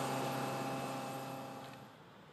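Super Guppy's turboprop engines and propellers droning steadily as the plane climbs away, fading out toward the end.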